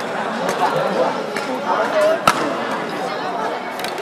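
Indistinct chatter of many voices filling a large indoor sports hall, with a few sharp knocks; the loudest comes about two and a quarter seconds in.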